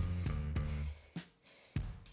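Background music with a steady drum beat and bass notes.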